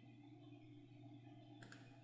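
Near silence: a faint steady hum of room tone, with one faint computer mouse click about one and a half seconds in.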